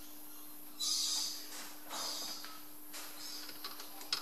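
Metal lathe's slides being locked up before a parting cut: a short metallic scrape about a second in, then a couple of fainter clicks, over a steady hum.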